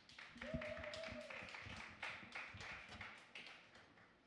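Light scattered applause from a small audience, irregular claps that thin out near the end, with a short held note about half a second in.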